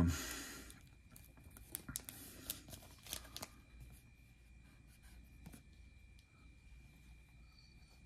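Faint clicks and rustles of a cardboard trading card being turned and handled between the fingers, a few light taps between about one and three and a half seconds in, over quiet room tone with a faint steady high tone.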